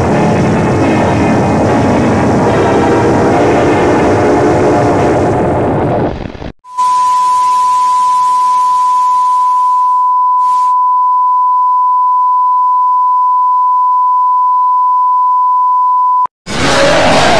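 Loud, distorted logo music for about six and a half seconds, cut off abruptly. Then a steady television colour-bars test tone, one unchanging high beep, sounds over static hiss; the hiss cuts out a few seconds later and the bare tone runs on until it stops.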